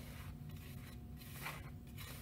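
A hand stirring dry flour and salt in a glass mixing bowl: faint, soft rubbing and scraping, with a slightly louder swish about one and a half seconds in.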